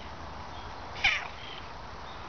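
A domestic cat giving one short meow about a second in, sliding down in pitch.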